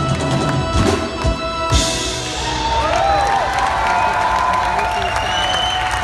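A big band's horn section holds a final chord over drums and cymbals, cutting off sharply about two seconds in. The audience then applauds and cheers.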